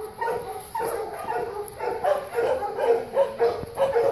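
A dog whimpering and yipping in short, high, pitched cries that repeat every half second or so.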